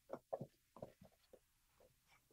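Near silence: room tone, with a few faint short sounds in the first second.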